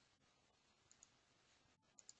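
Near silence, with a faint computer mouse double-click about halfway through.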